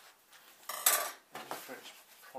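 Handling noise from a canvas print being moved in its cardboard shipping box. The loudest part is a sharp clack about a second in, with smaller scrapes and knocks around it.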